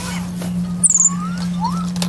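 Baby capuchin monkeys squeaking during play: a few short, high, sliding squeaks and chirps, the loudest a quick pair of very high chirps about a second in, over a steady low hum.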